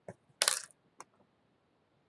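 A light click, then a short bright clatter of a small hard object about half a second in, and another sharp click about a second in.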